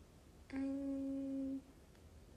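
A woman humming one steady, level note for about a second, starting about half a second in and stopping abruptly.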